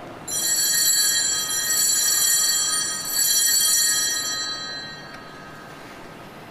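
Altar bells (a cluster of sanctus bells) rung at the elevation of the host after the words of consecration: a bright metallic jingle of several bell tones, shaken again in repeated swells, then dying away about five seconds in.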